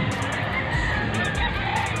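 A rooster crowing over steady background crowd noise.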